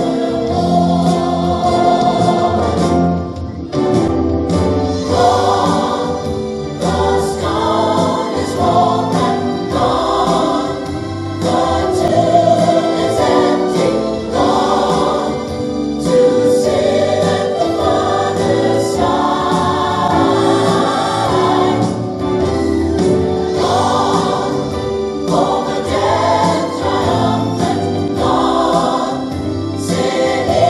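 Choir singing a gospel hymn, continuous and full, with sustained lower notes under the voices.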